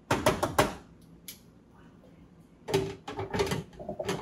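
Metal tongs and cookware clattering. There is a quick run of sharp clicks and knocks at the start, a single click a little after a second in, and another cluster of knocks about three seconds in.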